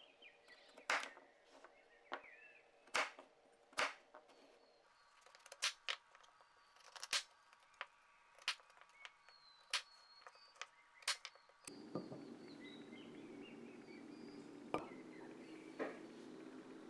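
Chef's knife chopping through raw kabocha squash onto a plastic cutting board: about ten sharp knocks, one every second or so. Near the end a steady low hum sets in, with a couple more knocks.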